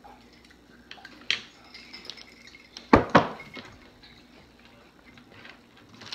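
Toppo cream-filled biscuit sticks being bitten and chewed: a few sharp, crisp snaps, the loudest pair close together about three seconds in.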